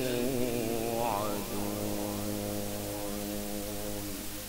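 A man reciting the Quran in the melodic tilawat style, his voice rising in pitch about a second in and then holding one long, steady note on a drawn-out vowel.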